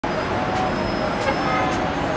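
Busy city road traffic: a steady wash of engine and tyre noise from cars and buses, with thin short tones and faint voices mixed in.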